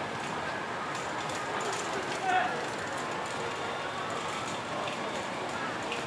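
Indistinct voices of people talking over steady outdoor background noise, with one short louder call about two seconds in.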